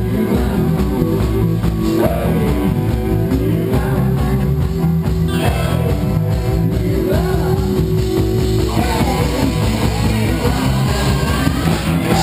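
Live rock band playing, with electric guitars, bass, drum kit and singing.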